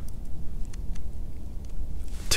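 Low wind rumble on the microphone, with a few faint, short clicks from the camera's dials as the exposure is set darker for a faster shutter speed.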